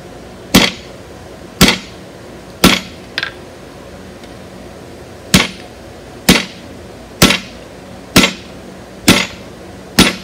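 A striker's sledgehammer hits a blacksmith's set hammer held on red-hot round bar on the anvil, each blow a sharp ringing clang. Three blows come about a second apart, then a pause of about two seconds, then five more at the same pace, over a steady low hum.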